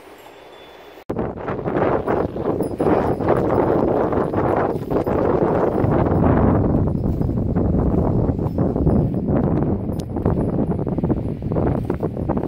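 Loud rustling and crackling of leafy branches as sheep crowd in and pull at them, with wind rumbling on the microphone. It starts suddenly about a second in, after a faint steady hiss.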